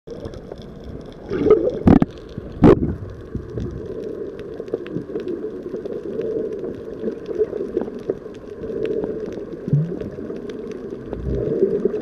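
Underwater ambience picked up by a submerged camera: a steady muffled rush dotted with faint crackling ticks, and two sharp loud knocks about two seconds in.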